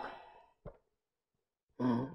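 A man's short, heavy sigh near the end, with a faint tick about half a second in; otherwise near silence.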